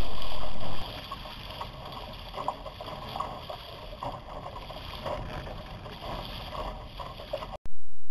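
Water splashing and washing against the hull of a Laser sailing dinghy, with wind on the head-mounted camera's microphone. The level drops sharply just under a second in, and the sound cuts off just before the end.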